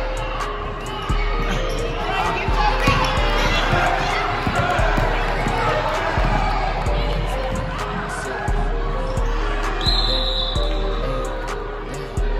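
Basketball bouncing on a hardwood gym floor as players dribble and run the court, with voices in the hall. Music with a deep bass line plays underneath.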